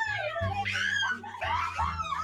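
Young women's high-pitched, squealing laughter with sliding pitch, over background music with a steady bass line.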